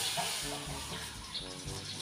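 Quiet outdoor background: a faint steady hiss, with a faint voice in the background twice.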